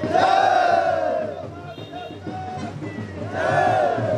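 A crowd of men shouting together in unison, twice: a long shout over the first second or so and another near the end.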